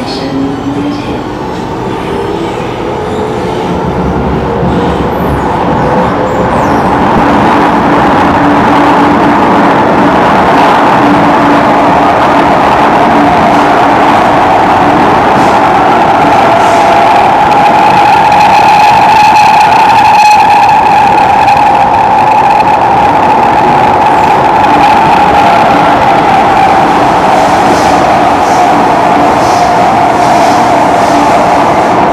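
Singapore MRT electric train heard from inside the carriage as it pulls away: its motor whine climbs in pitch and the running noise grows louder over the first several seconds. It then settles into a steady, loud rumble and hum at speed, with a faint high ringing tone in the middle stretch.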